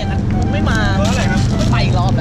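A man's voice talking briefly over a steady low vehicle rumble.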